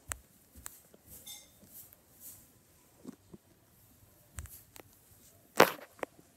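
Soft, irregular footsteps and phone-handling rustle going down carpeted stairs, with one loud thump about five and a half seconds in.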